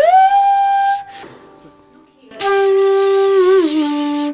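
Chitravenu, a blown flute-like slide instrument, playing a held note that glides up an octave and stops about a second in. After a short pause a second held note sounds and slides down a few steps near the end, showing how short the slide distance between notes is.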